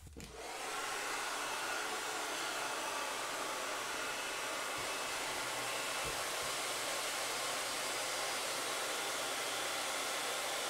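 Hand-held hair dryer switched on, settling within a second into a steady blow of hot air. The air is heating a plastic toy part to soften it and clear white stress marks.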